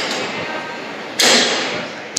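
Underground metro station hall ambience, with one short, loud whooshing hiss a little past a second in that fades quickly.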